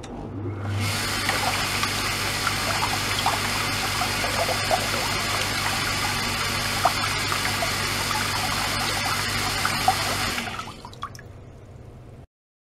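Water pumped by an Iwaki magnet-drive pump through a hose into a plastic tub, splashing and churning, over the pump motor's low hum. The sound comes on about a second in, holds steady, and dies away near the end as the flow stops.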